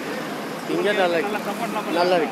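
A man speaking in short phrases over steady road traffic noise from passing vehicles.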